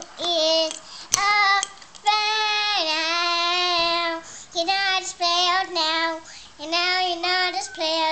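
A young girl singing an improvised song, phrases of sung notes with short gaps, including one long held note a couple of seconds in. A brief click sounds about a second in.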